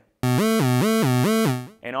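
Moog Werkstatt-01 analog synthesizer, driven by an Arduino arpeggiator, playing a buzzy tone that alternates quickly between a root note and a higher note, about five notes a second, then stops about a second and a half in. The higher note is meant to be the octave but is not yet a true octave, because the VCO exponential trim is still uncalibrated.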